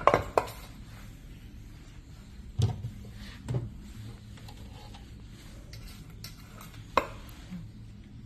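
A plastic roll tray and the wire racks of a food dehydrator being handled and set in place. There are a few separate sharp knocks and clatters: one near the start, two around three seconds in and one near the end. A low steady hum runs underneath.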